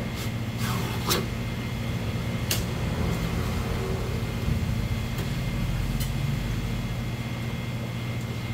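Steady low machine hum with a thin high whine, typical of kitchen refrigeration or air conditioning. Over it come a few light clicks and knocks as a knife and a flounder fillet are handled on a plastic cutting board, most in the first three seconds and one about six seconds in.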